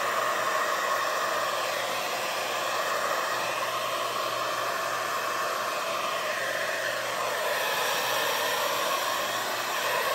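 Handheld hair dryer running steadily, its air rushing out close over wet acrylic paint to blow it into a bloom. The tone shifts slightly as the dryer is moved.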